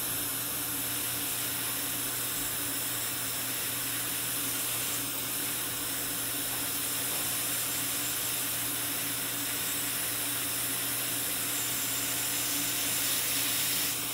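Dental suction hissing steadily, with a low hum beneath it.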